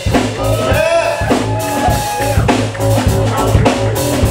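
Live rock band playing an instrumental passage: drum kit keeping a steady beat under electric bass and guitar lines.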